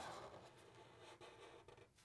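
Faint sound of Sharpie markers drawing curved lines on paper, trailing off over the first second and a half.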